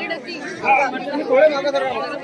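Chatter of several people talking at once, their voices overlapping with no clear words.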